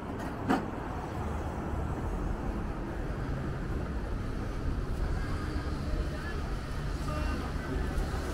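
Street ambience dominated by a steady low rumble of road traffic, with one sharp click about half a second in.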